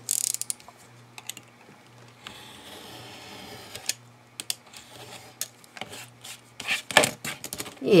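A yellow snap-off craft knife trimming a thin strip of paper along a steel ruler: a quick run of clicks at the start, then the blade drawn through the paper as a steady scratchy hiss for about a second and a half, followed by a few light clicks and taps.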